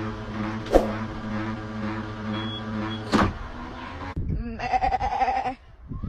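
An automatic dog ball launcher humming, firing a ball with a sharp thwack twice: under a second in and a little after three seconds. Near the end a sheep gives one deep bleat.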